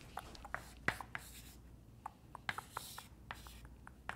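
Chalk writing on a chalkboard: a run of sharp taps and short scratchy strokes as an expression is written out.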